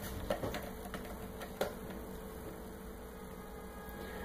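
Kittens' claws catching and scratching on a sisal-rope scratching post: a few short scratches in the first two seconds, over a steady low electrical hum.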